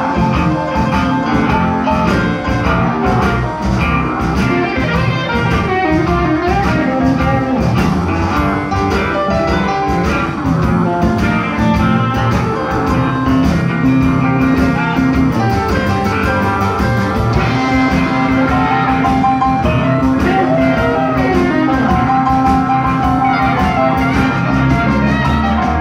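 Live band playing an instrumental section, led by an electric guitar on a Telecaster-style guitar with bent notes. Keyboard, bass and a drum kit keep a steady beat underneath.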